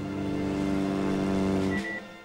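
Steady drone of a Fairey Swordfish biplane's radial engine during takeoff from a carrier deck, holding one pitch. It cuts off near the end, where a short, high Morse-code beep begins.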